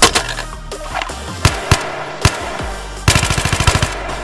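Gunshot sound effects for an FN F2000 bullpup rifle over background music: three single shots in the first half, then a rapid automatic burst lasting under a second near the end.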